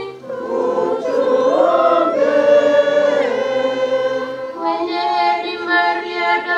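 Voices singing a hymn together at Mass, with long held notes and a new phrase starting about two-thirds of the way through.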